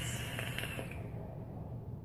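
Faint hiss of a long draw on a vape, air pulled through the heated atomizer, fading out a little over a second in.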